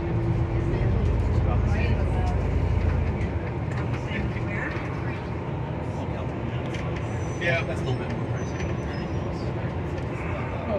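Low, steady rumble of a vehicle engine, heaviest for the first three seconds and then easing, with faint voices over it.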